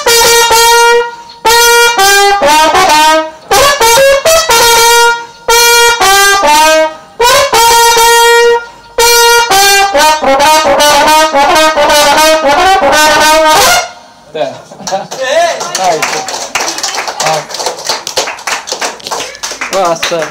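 Trumpet playing a melody in short loud phrases, each broken off by a brief pause. It stops about fourteen seconds in, and people talk over a noisy room.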